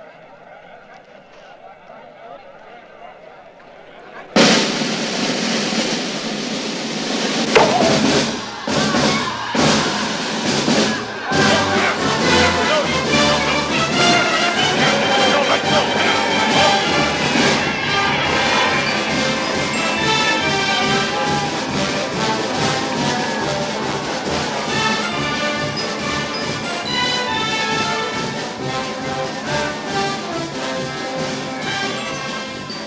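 Faint background voices for about four seconds, then an orchestral film score with brass comes in suddenly and loud, with several sharp percussive hits in its first few seconds.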